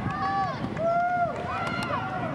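Women shouting: three long, high-pitched calls, one after another.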